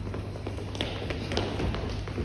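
Children's footsteps on a hard hall floor: irregular light taps and a few thuds as several children walk and turn about.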